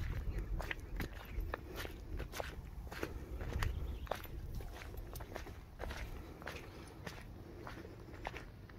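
Footsteps on wet wood-chip mulch from a draft horse and the people walking around it: irregular sharp steps about three a second, over a low rumble.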